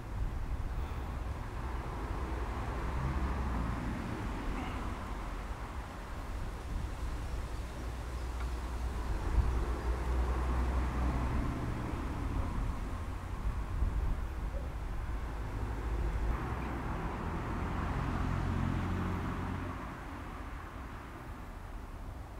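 Outdoor background noise: a steady low rumble with a hiss that swells and fades every few seconds.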